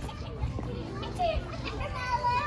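Children's voices at a swimming pool, fairly faint and scattered.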